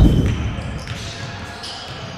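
A basketball being dribbled on a hardwood court in a large, echoing sports hall.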